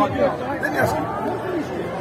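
Men's voices talking over one another in a heated debate.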